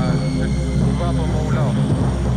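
Ambient electronic music: a steady low drone under high, held electronic tones, with faint snatches of voice from an overheard phone call mixed in.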